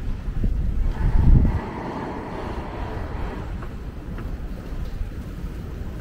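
Outdoor street ambience dominated by wind rumbling on the microphone, with a stronger gust about a second in.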